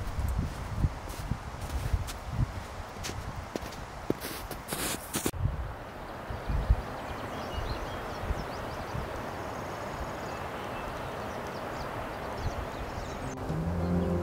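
Hiking boots crunching down a snowfield in irregular steps for about the first five seconds. After that comes a steady rushing noise.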